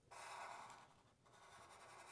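Faint scratching of a felt-tip Sharpie marker drawing on paper, in two short strokes: one just after the start and a weaker one in the second half.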